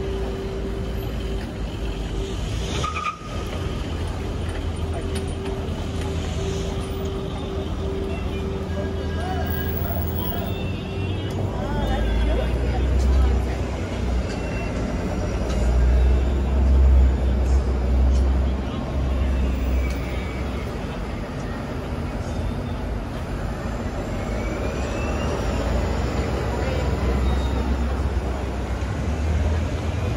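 Busy city street traffic heard from a crowded sidewalk: a steady rumble of engines and passing cars, with a hum for the first ten seconds or so. The rumble swells in the middle as a city bus runs alongside. Passers-by talk throughout.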